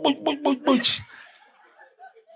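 A man's voice breaking into chuckles during the first second, followed by fainter scattered laughter.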